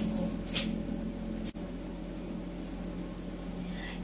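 Steady low hum with a faint hiss, and a short click about half a second in.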